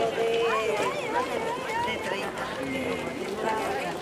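A crowd of people talking and calling out over one another, several voices at once, none clearly leading.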